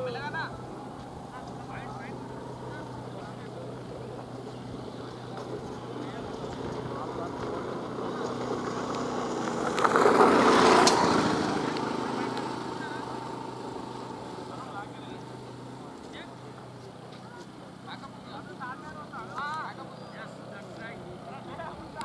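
A vehicle passing by: a noisy rumble that swells over several seconds to its loudest about midway, then slowly fades away. One sharp click falls at its loudest point, over a low steady hum.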